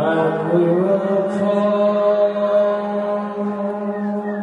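Live band playing a steady, droning chord, with a man singing a long, held, chant-like vocal line into a microphone over it, entering right at the start.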